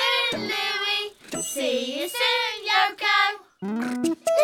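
Children's voices singing a short wordless phrase over music, in about three swooping phrases with brief breaks. Just before the end the singing stops and the end-credits music begins.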